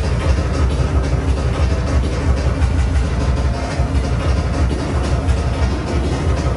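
Loud live breakcore through a club sound system: a dense stream of fast, distorted electronic beats over a very heavy bass.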